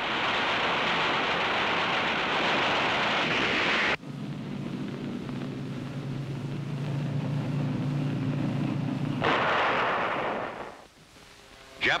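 Film battle sound track: a dense steady roar of anti-aircraft fire and explosions that cuts off abruptly about four seconds in. It is followed by the steady drone of a WWII carrier plane's piston engine, then a second short roar that fades away near the end.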